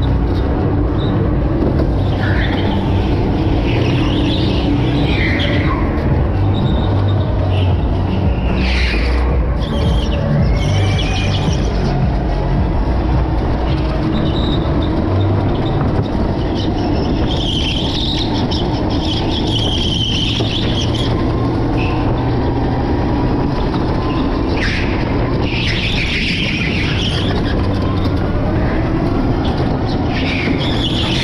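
Electric go-kart running at speed, its rumble and drive noise steady, with the tyres squealing again and again through the corners.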